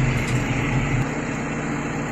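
Tractor engine running with a steady drone, heard from inside the cab; about a second in, the deepest part of the rumble drops away.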